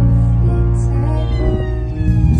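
Music: a young girl singing a long held note into a microphone over an accompaniment of sustained low chords.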